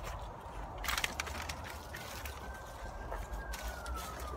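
Footsteps and rustling outdoors, with a low rumble on the phone microphone and a few sharp clicks. A faint high tone slowly rises and then falls.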